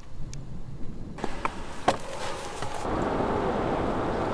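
Car road noise: a low rumble that builds into a steady rushing hiss in the second half, with a few light clicks in between.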